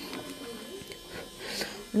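Electric nail drill (manicure e-file) running with a steady faint whine.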